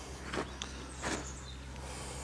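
Quiet outdoor background with a steady low hum and two soft scuffs a little under a second apart, footsteps on dry ploughed soil.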